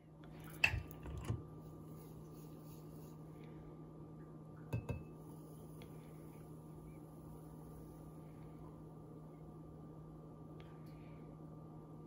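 Frothed milk poured from a stainless steel milk frother jug into a glass mason jar. There are a few clinks and taps of kitchen things about a second in and again near five seconds, over a steady low hum.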